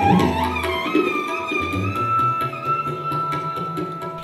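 Sarangi being bowed: a melodic phrase that climbs in pitch in the first second, then settles into a long held high note.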